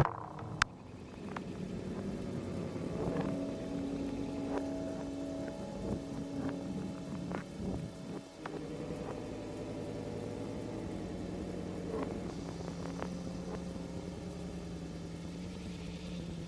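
Experimental electronic music: a steady low synthesized drone of held tones with scattered faint clicks, its texture shifting about eight seconds in.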